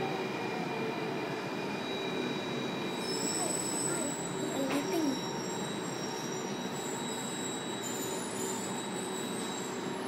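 Alstom C830 metro train running through a tunnel, heard from inside the car near a door as it nears a station: a steady rumble with a thin steady whine. High-pitched wheel squeal joins in about three seconds in and carries on to the end.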